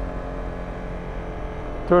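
Honda CBR250R single-cylinder motorcycle engine running steadily at low speed, with wind and road rumble, picked up by a helmet-mounted microphone. A spoken word begins at the very end.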